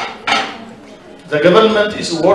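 A man speaking into a handheld microphone, with a short pause after the first syllable.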